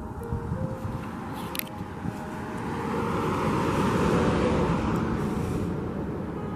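A car driving past on the street, its noise growing to a peak about four seconds in and then fading away.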